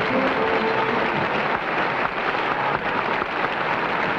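Studio audience applauding, with a band's music under it that fades out in the first second or so while the applause carries on.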